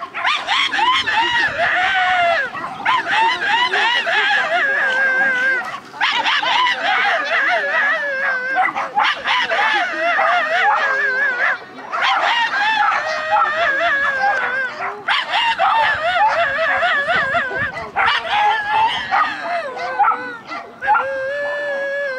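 Dog barking, howling and yelping almost without pause, with a couple of brief breaks.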